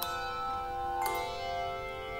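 Handbell choir playing: chords of brass handbells struck together and left ringing. A new chord is struck at the start and another about a second in.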